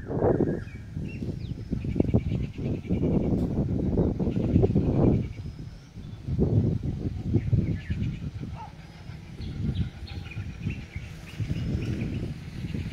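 Gusts of wind rumbling on the microphone, rising and dropping away every second or two, with small birds chirping faintly over it.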